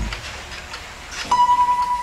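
A struck tuning fork sounding a single steady, clear high tone that starts abruptly a little over a second in and rings on evenly.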